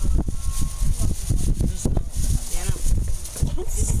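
Indistinct voices of people nearby over a steady low rumbling noise on the microphone, with a few short knocks.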